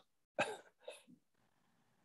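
Two short vocal sounds over a video call, about half a second and a second in, with near silence between and after.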